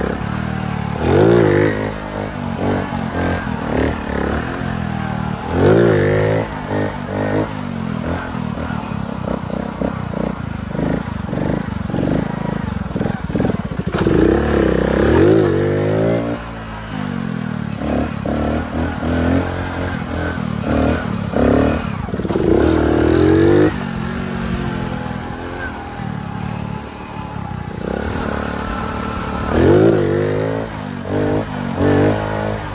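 Honda CD70's small single-cylinder four-stroke engine revved in about five sharp bursts a few seconds apart, its pitch rising quickly each time and dropping back in between. These are the throttle bursts that lift the front wheel for a wheelie with rider and passenger aboard.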